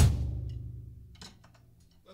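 The song's closing band hit, led by drums, ringing out and fading away, with a few faint clicks after about a second.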